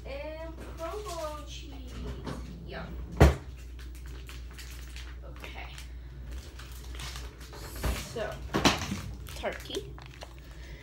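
A short wavering vocal sound at the start. Then a single sharp knock about three seconds in, and a few more knocks and handling noises near the end, as food items are taken out in a kitchen.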